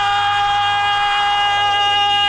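A male singer holds one long, steady high note in a Bangla film song, over a low steady drone.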